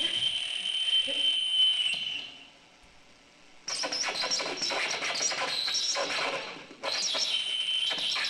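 Circuit-bent electronic instruments played through amplifiers: a high squealing tone drops in pitch, holds, and cuts off about two seconds in. After a short gap, dense glitchy crackling with high squealing tones starts, breaks off for a moment near the end, then resumes.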